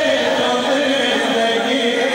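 Qasida sung by a voice amplified over a loudspeaker system, in long held notes that slide in pitch.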